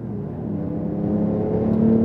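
Porsche 911 Turbo S twin-turbo flat-six accelerating hard, heard inside the cabin, its note rising steadily in pitch and growing louder.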